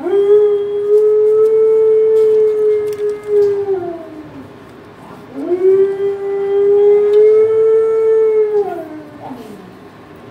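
A dog howling: two long howls of three to four seconds each, one at the start and one about five seconds in, each holding one pitch and then sliding down at the end.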